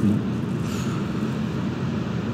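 Steady low rumbling background noise inside a concrete pedestrian tunnel, even throughout with no distinct knocks or steps.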